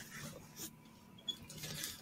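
A quiet pause with faint background hiss and a few soft, brief noises.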